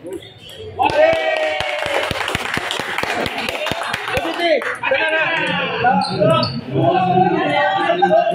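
A table tennis rally: a celluloid-type plastic ball clicks off paddles and the table about four times a second for a few seconds, then stops a little past halfway. People's voices are heard over the rally and after it ends.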